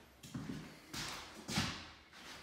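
Footsteps on a bare floor stripped of its carpet and flooring: three knocking steps about 0.6 s apart, with a short echo in an empty room.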